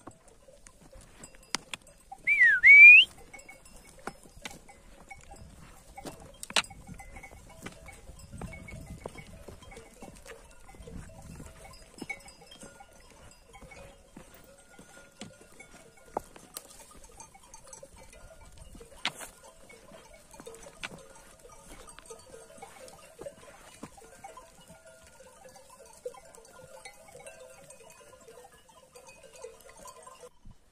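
Bells on a grazing flock of sheep clinking and tinkling. About two and a half seconds in there is one loud, short whistle that dips and then rises in pitch.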